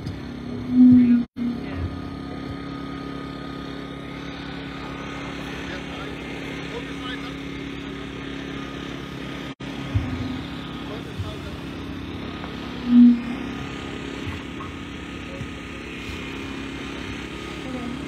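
A steady low mechanical hum, like an engine or motor running, with two short, loud low tones, one about a second in and another about thirteen seconds in.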